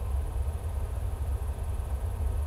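21-inch RDW subwoofer playing a test signal through a 100 Hz, 48 dB-per-octave Butterworth low-pass filter: a steady deep rumble with nothing heard above about 100 Hz.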